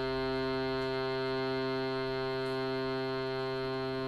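Shruti box holding a steady drone: one low note, rich in overtones, sustained without change.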